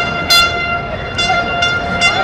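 A horn holding one steady high note, with a louder short blast about a third of a second in and a few brief toots in the second half; the note stops near the end.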